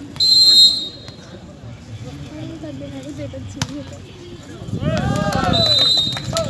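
Volleyball referee's whistle blown in a short loud blast at the start, a single sharp smack in the middle, then shouting voices and a second, shorter whistle blast near the end.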